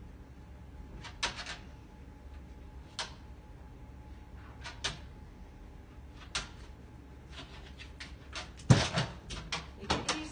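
Scattered knocks and clicks of a dog moving about under a metal stand and against kitchen cabinets while searching, with a louder cluster of knocks near the end.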